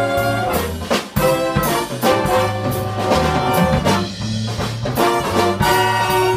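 Big band playing jazz: the brass section of trumpets and trombones holds chords over a bass line and a steady drum beat.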